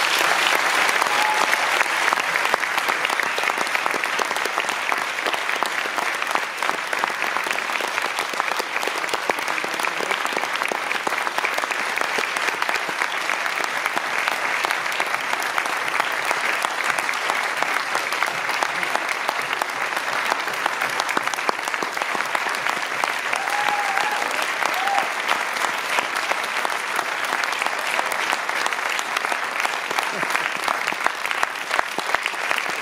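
An audience applauding, a dense, steady clapping of many hands that holds at an even level throughout.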